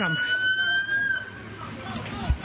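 Police siren wailing in a slow upward sweep, then fading out about a second and a half in.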